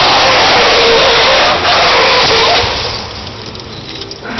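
A BMW E46's tyres screeching loudly as the car spins, a wavering squeal over dense skid noise, which falls away about three seconds in as the car leaves the tarmac.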